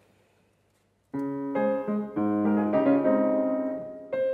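Steinway grand piano playing the short, catchy hook motif of an opera aria: a run of notes over held chords, starting about a second in after a brief silence.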